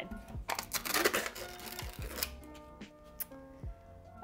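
Lid and foil seal being peeled off a plastic tub of Greek yogurt: a crinkling, tearing rustle from about half a second in until a little after two seconds, over background music.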